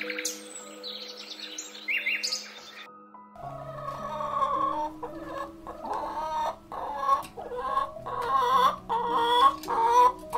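Hens clucking, a string of short repeated calls that start after a cut about three and a half seconds in and grow louder toward the end. Before the cut there are high bird chirps, and held background music notes run underneath.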